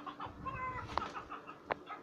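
Toys knocking about in a plastic toy box as it is rummaged through, with two sharp knocks, one about a second in and one near the end, under short high-pitched voice sounds.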